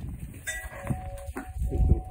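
A light clink about half a second in, then a steady bell-like ringing tone that holds. Low thumps and rumble come near the end.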